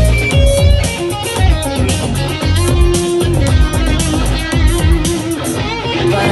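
Live rock band playing an instrumental passage through the PA: electric guitar, bass guitar and a steady drum beat, with no vocal line.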